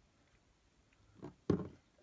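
Two light knocks as plastic Schleich horse figurines are handled and set down on a wooden shelf, the second the louder, about a quarter second after the first.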